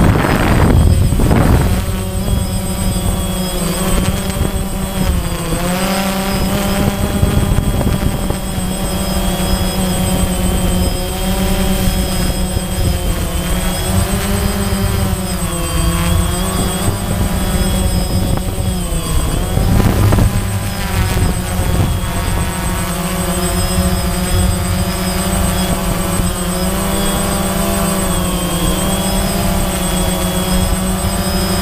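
DJI Phantom quadcopter's motors and propellers buzzing in flight, heard from on board the drone, the pitch wavering up and down as the motors change speed. Wind rumbles on the microphone underneath.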